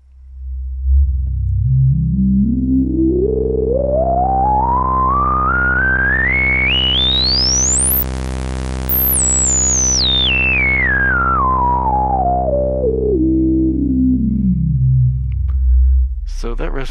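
A low, steady synthesizer sawtooth note through the GSE XaVCF, an OB-Xa-style AS3320 filter in its 4-pole lowpass mode. The filter cutoff is swept slowly all the way up and back down, so the sound opens from a dull buzz to full brightness about halfway through, then closes again. A resonant peak whistles along with the sweep.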